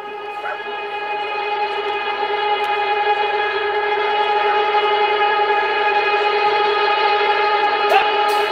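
Live rock band holding one sustained chord as the song's intro, fading in and slowly growing louder, with no drums yet.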